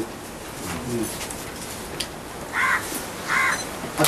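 A bird calling twice in the second half: two short calls about three-quarters of a second apart.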